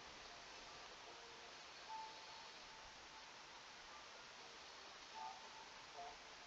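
Near silence: a faint steady hiss of room tone, with two faint brief sounds about two seconds in and again a little after five seconds.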